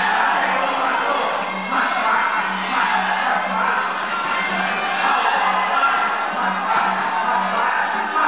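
Stadium crowd cheering and shouting during a Muay Thai bout, over fight music with a steady drum beat and small cymbal ticks about twice a second.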